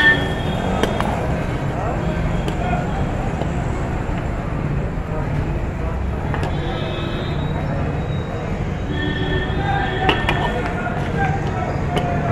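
A large iron wok being stirred and tossed, with a few sharp knocks of the metal ladle against the pan. Under it runs a steady low hum and background chatter.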